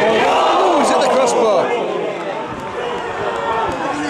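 Football crowd shouting together as a header strikes the frame of the goal, a near miss. The shout is loudest in the first second or so, then dies down.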